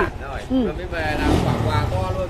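A low, steady engine rumble under quiet, indistinct talk.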